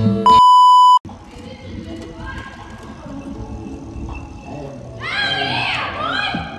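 A loud, steady electronic beep tone lasting under a second, cutting off sharply. After it, people's voices talking and calling out, louder near the end.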